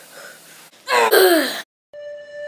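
A boy's short breathy vocal cry or gasp, falling in pitch, about a second in; it cuts off abruptly.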